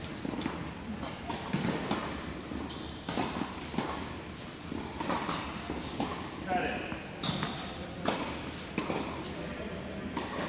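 Tennis balls struck and bouncing on indoor hard courts: irregular sharp knocks, with indistinct voices, in a large indoor tennis hall.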